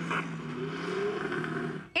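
Action-film car-chase soundtrack: a car engine running under steady sustained tones, played through a deliberately tinny, muffled 'TV sound' setting. It cuts off suddenly just before the end.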